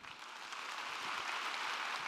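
Audience applauding, building up over the first half second and then holding steady.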